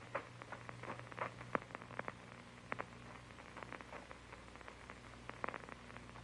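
Faint, irregular clicks and crackles over a steady low hum: the surface noise and hum of an old film soundtrack.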